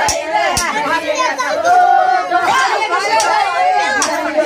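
Many women's voices at once: group singing of a Banjara folk song mixed with loud chatter and calls, with a couple of sharp claps in the first second.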